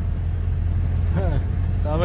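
Steady low rumble of road and engine noise inside the cabin of a car driving at highway speed.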